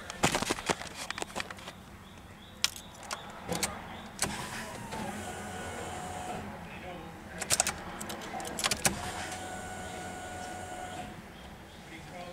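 Clicks from the car's ignition key and switches being worked, and twice a steady electric whine of about two seconds while the key is held on, ahead of cranking the engine.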